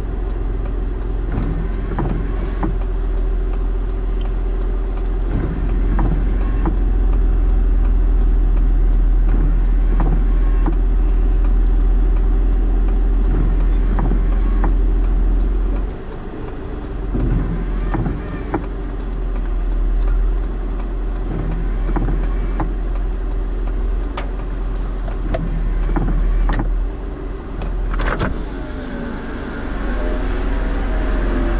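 Car engine idling, heard from inside the cabin: a steady low rumble with scattered faint clicks. The rumble drops away briefly about halfway through.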